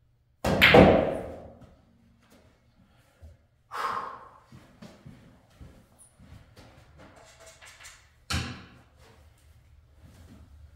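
Pool shot: a hard clack of cue and balls about half a second in, ringing briefly, then a softer ball knock at about four seconds and another sharp clack near the end, with faint small knocks in between.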